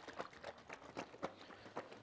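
Faint, irregular small knocks and sloshes from a cardboard carton of liquid egg whites being shaken by hand.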